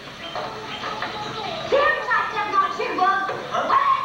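Voices with no clear words, in short vocal bursts that rise and fall in pitch.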